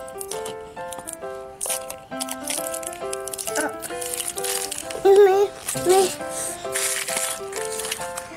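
Light background music, a simple melody of short held notes stepping up and down, over scattered clicks and rattles of plastic surprise eggs being handled and opened. A child's voice comes in briefly a few times in the second half.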